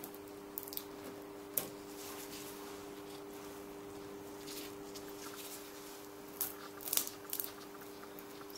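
Faint ticks and crackles of a plastic sheet and knife being worked as a dried piped-icing outline is lifted off the plastic, a few near the start and a cluster near the end, over a steady low hum.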